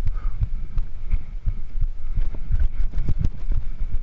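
Mountain bike rolling over a rocky dirt trail: a steady low rumble with frequent irregular knocks and rattles as the wheels hit rocks and the bike jolts.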